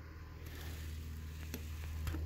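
Steady low background hum with a faint hiss, and a single light tick about one and a half seconds in.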